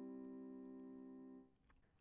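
Piano C major chord ringing and fading away, then cut off about one and a half seconds in as the keys are released.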